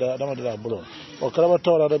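A man's voice speaking, with a short pause about halfway through.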